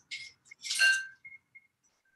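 Metal cocktail shaker tins knocking and clinking together as they are handled: a short rattle at the start, then one louder ringing clink just under a second in that dies away quickly.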